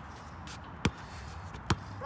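A basketball being dribbled on a concrete court: two sharp bounces, a little under a second apart.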